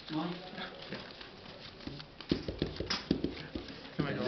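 Sleeved trading cards being shuffled and handled on the table, with a run of quick clicks a little after two seconds in that lasts just over a second.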